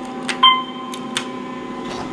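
Otis Series 1 elevator car: sharp clicks of the car-panel floor button being pressed, and about half a second in a single short electronic tone, the signal as the floor call registers. A steady low hum from the elevator runs underneath.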